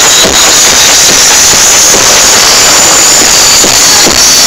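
Psytrance blasting from an open-air sound system, recorded overloaded: the kick drum drops out for a breakdown filled by a loud hissing wash of noise, and the beat comes back near the end.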